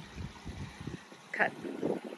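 Wind buffeting the microphone: a low, uneven rumble, with one short spoken word in the middle.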